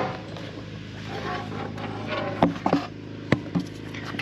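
Footsteps and handling noise as a person moves around the mower: a few short clicks and knocks, the sharpest a little after three seconds in, over a steady low hum.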